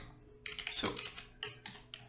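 Typing on a computer keyboard: a quick run of keystroke clicks starting about half a second in.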